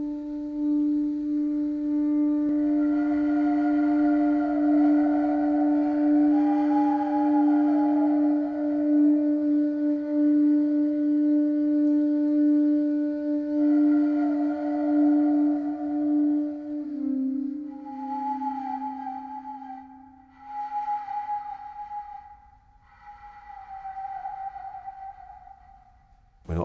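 Free improvised music: a long, steady, low saxophone tone held under wavering, breathy higher tones from a taonga pūoro, a traditional Māori flute. About two-thirds of the way in the low tone dips and fades out, leaving the breathy flute tones, which come and go in short phrases.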